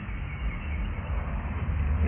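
Outdoor background noise: a steady low rumble, growing stronger toward the end, over a faint even hiss, with no distinct clicks or knocks.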